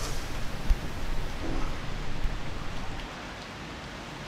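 Steady rain-like rushing noise with a few short low thuds, dropping to a quieter, steadier hiss about three seconds in.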